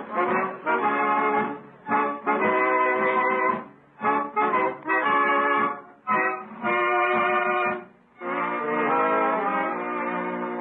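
Brass-led music bridge between scenes of a radio comedy: short phrases of held chords, each about two seconds long with brief breaks between them, then a longer held chord near the end.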